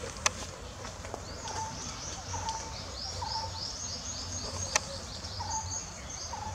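Birds calling: a rapid run of high chirps starting about a second and a half in, over short lower notes repeated about once a second. Two sharp clicks, one just after the start and one near the end, are the loudest sounds.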